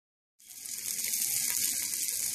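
Sausage links frying in a hot skillet: a steady high sizzle of fat with small crackles and pops, coming in about half a second in.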